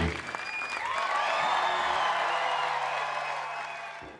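Live rock band's last chord cuts off, followed by studio audience applause and cheering with shouts and whistles, which fades out near the end.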